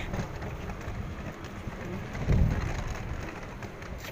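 City street background noise: a steady traffic hiss with low rumbling that swells a little past halfway.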